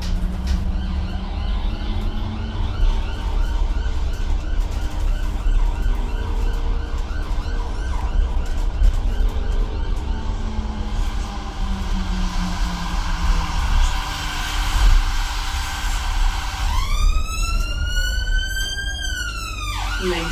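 Steady low rumble of a battery-electric Enviro200 EV single-decker bus riding along, heard from the passenger cabin. About three seconds before the end an emergency vehicle's siren wails in, rising sharply and then holding high.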